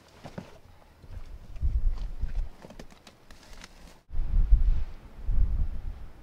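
Gusts of wind rumbling on the camera microphone, mixed with scattered scuffs and taps of boots and hands on rock as the hunters climb. The sound cuts out for an instant about four seconds in, and the wind rumble then comes back louder.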